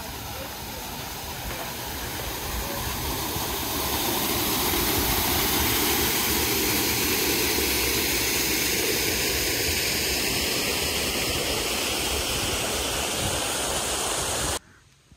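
Small waterfall spilling from an arch in a dry-stone wall and splashing into a pool below: a steady rush of water that grows louder over the first few seconds, then holds.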